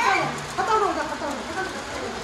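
Indistinct voices talking in a room, over a steady low hum.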